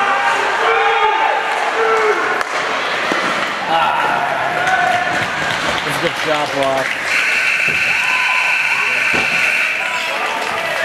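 Ice hockey play in a rink: shouting voices and the odd sharp knock of stick or puck. About seven seconds in comes a long, steady, high referee's whistle blast as play is stopped.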